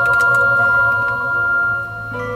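Background organ music: held chords that shift near the end.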